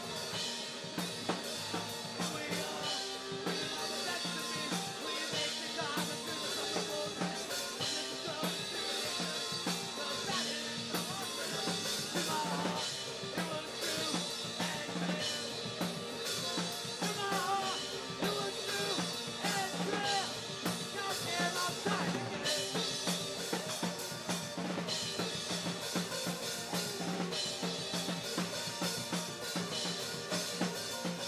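A band playing a song live, the drum kit keeping a steady beat with kick and snare under electric guitar.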